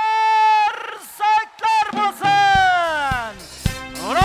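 Live Uzbek folk music: a voice holds a high note, then sings a long downward glide. Frame-drum beats come in during the second half.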